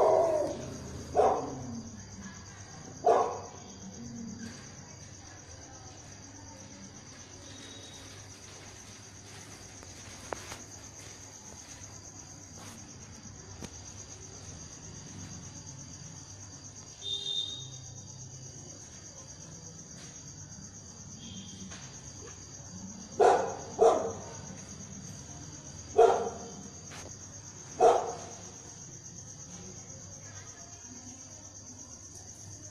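A dog barking in short single barks, three in the first few seconds and four more a few seconds before the end, over a steady high-pitched insect drone like crickets.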